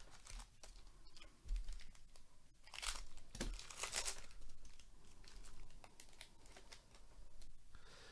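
Foil wrapper of a 2022 Panini Prizm baseball card pack being torn open and crinkled by gloved hands: a quiet, irregular run of rips and crackles, with the densest bursts in the middle few seconds.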